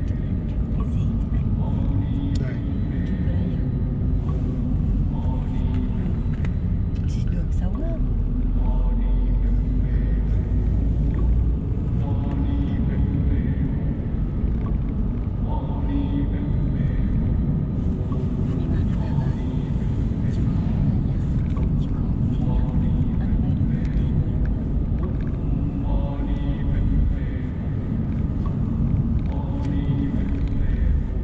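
Steady engine and road rumble inside a Mercedes-Benz car on the move, with voices talking over it at times.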